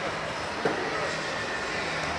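Steady low rumble and hum of vehicles in a bus bay, with one sharp knock a little over half a second in and faint voices behind.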